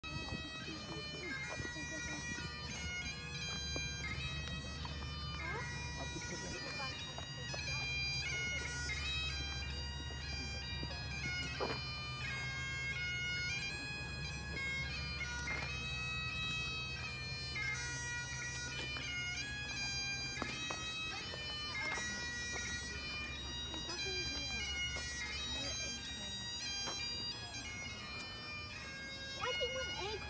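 Bagpipes playing a melody over steady, unbroken drones.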